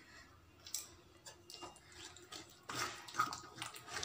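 Metal spoon stirring and scraping thick masala paste in a metal kadai: faint with a few soft clicks at first, louder scraping from about two-thirds of the way in.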